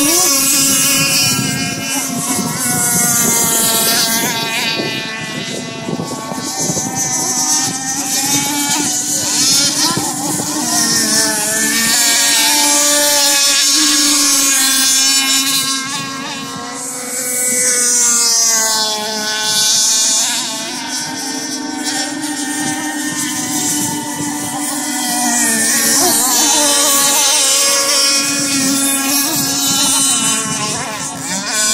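Several nitro RC race boats' small glow-fuel two-stroke engines running at high revs. Their pitch rises and falls as the boats accelerate, turn and pass, and the sound dips and swells.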